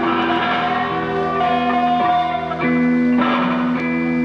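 Live rock band in an instrumental passage: distorted electric guitars ring out sustained chords that change about every second, with a lead guitar bending and sliding notes over them and no steady drumbeat.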